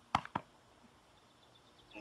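Two short, sharp knocks about a fifth of a second apart just after the start, then near silence.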